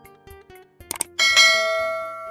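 Sound effects of a subscribe-button animation: two quick mouse clicks a little under a second in, then a bright bell chime that rings out and slowly fades.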